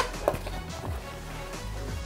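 Soft background music, with a faint tap or two near the start as the zippered headphone case is handled and opened.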